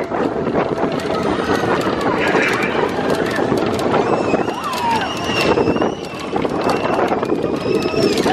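Slinky Dog Dash roller coaster train running along its track, a continuous rumble and clatter. Riders' screams and shouts rise over it, mostly in the middle.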